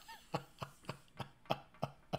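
A man laughing quietly, a breathy chuckle of about seven short puffs spread over two seconds.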